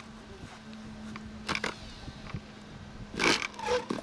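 Brief bursts from a handheld electric starter pressed against an RC model plane's glow engine, about twice, the engine not catching. It is suspected to be flooded. A faint steady hum runs underneath.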